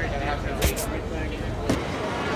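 City street ambience: traffic running past under a murmur of voices, with two sharp clicks a little after half a second in and another near the end.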